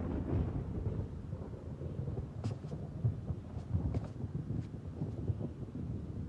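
A steady low rumble with a few faint clicks over it.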